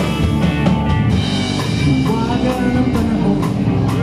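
Live rock band playing in the room: drum kit keeping a steady beat under electric guitars and bass guitar.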